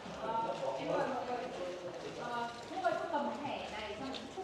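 Several people talking in a corridor, over footsteps tapping on a hard stone floor.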